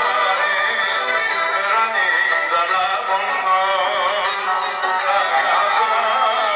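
Live band music played through a PA, with a violin and a male voice singing. The sound is thin, with no deep bass.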